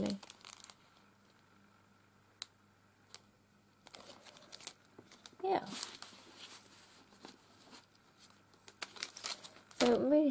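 Thin clear plastic packets crinkling and rustling as they are handled, in scattered bursts that grow busier in the second half, after a fairly quiet first few seconds. A short vocal sound about halfway.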